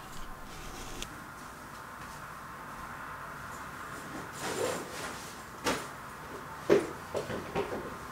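A handful of short knocks and clunks of someone moving about indoors, like cupboard doors or drawers being handled. They start about halfway through, with the sharpest one near the end, over a steady background hum.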